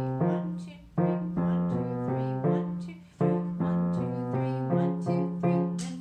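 Grand piano playing a short repeating exercise. A low note is held in the left hand while the right hand plays two-note intervals, and the figure starts over about every two and a quarter seconds.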